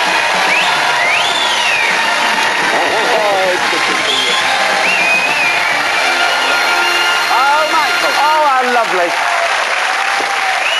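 Studio audience applauding and cheering, with high whoops rising and falling over the clapping.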